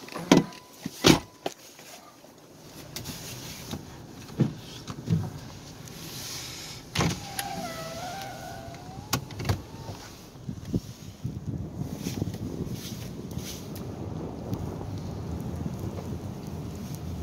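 Car on Kumho all-weather tires driving through deep snow, heard from inside the cabin: a steady low engine and tyre noise that grows fuller in the second half. Several sharp knocks come through, the loudest about a second in, and a brief wavering whine sounds about seven seconds in.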